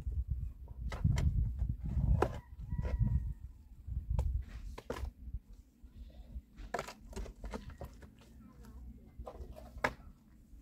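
A long-handled shovel digging into stony earth: repeated scrapes and sharp knocks of the blade against soil and stones, with heavy low thuds in the first half.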